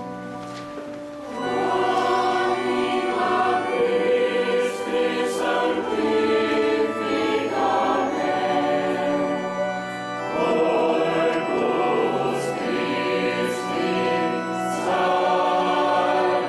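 Church choir singing sacred music. The voices hold a quieter chord at first, swell loudly about a second and a half in, dip briefly about ten seconds in, then carry on at full strength.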